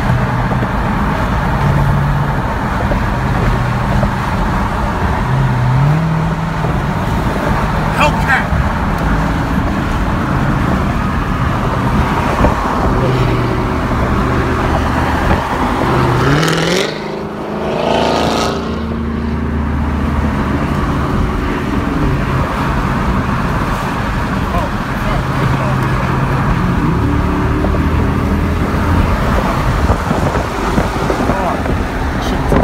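Steady road and engine noise heard from inside a car cruising on a highway. Low tones shift in pitch every second or two, and a brief surge rises and falls a little past halfway through.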